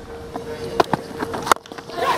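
Cricket ground ambience picked up by the broadcast field microphones: faint crowd noise over a steady hum, with two sharp clicks, the second the louder, about a second and a half in.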